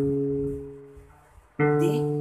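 Electric bass guitar notes plucked one at a time up the G string, a semitone apart. A C-sharp rings and dies away over about a second, then a D is plucked near the end.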